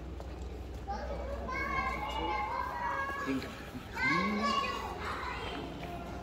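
Children's high voices calling and shouting at play, loudest about four seconds in, over a steady low hum.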